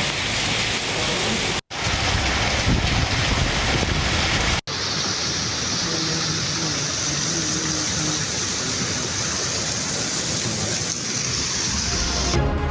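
Heavy rain pouring with wind on the microphone: an even, loud hiss across three cut-together clips, broken by two sudden brief dropouts about two and four and a half seconds in.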